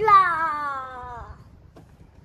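A toddler's drawn-out vocal 'yaa', high-pitched and sliding slowly downward, lasting a little over a second before fading out.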